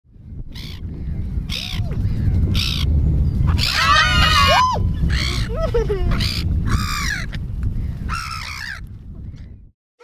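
Black-headed gulls calling with short harsh cries, about one a second and several at once near the middle, over a steady low rumble of wind on the microphone. The sound cuts off abruptly just before the end.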